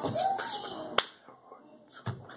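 A man's wordless vocal sounds while signing, with a single sharp click from his hands, a snap or clap, about a second in.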